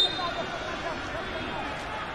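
Football stadium ambience: a steady murmur with faint, distant shouted voices, and a brief high whistle tone at the very start.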